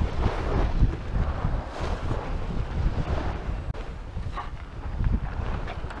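Wind buffeting the microphone: a low, uneven rumble that rises and falls with the gusts.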